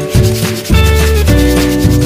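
Background music with a steady bass beat, over which emery paper is rubbed back and forth by hand on a cricket bat's willow blade.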